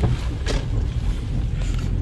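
Steady low rumble of road and wind noise inside a moving car, with a couple of faint clicks.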